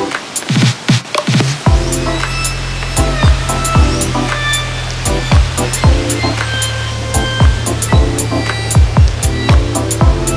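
Background music with a beat: quick ticks on the off-beats and deep bass hits that slide down in pitch, with a steady low bass entering under them about two seconds in.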